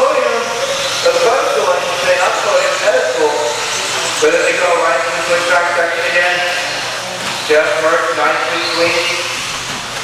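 Electric 17.5 brushless-motor 2WD RC buggies racing on a dirt track: a high motor and drivetrain whine that rises and falls as the cars accelerate and brake, over a steady hiss of tyres on dirt.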